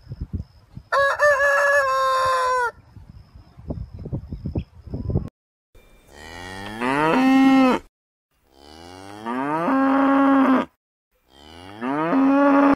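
A rooster crows once, a call of under two seconds, over low scratchy farmyard noise. Then cattle moo three times, each long call rising in pitch before holding steady.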